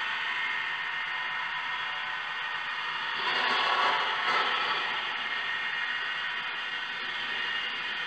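Pterophone, a handmade wing instrument with a contact microphone, played with scissors and run through effects plugins: a dense, grainy, crackling noise that swells louder about three to four and a half seconds in.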